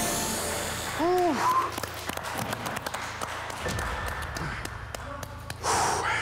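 A man's short voiced sigh about a second in, followed by scattered light taps and rustling, and a heavy breathy exhale near the end: a competitor catching his breath.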